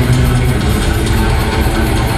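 Live speed metal band playing loud: electric guitar with bass notes held underneath and a drum kit, continuous throughout.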